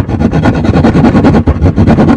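Narrow-bladed hand jab saw (drywall saw) cutting through plywood, with quick, even rasping strokes.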